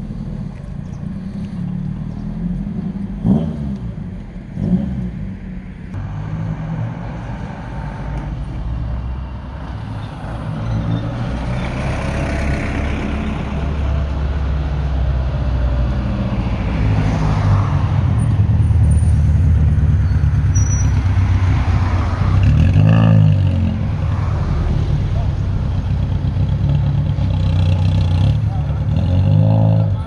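Historic Fiat Ritmo rally cars' petrol engines running, with the engine sound growing louder about a third of the way in as a car comes up close. The revs rise and fall a few times, most strongly near the end.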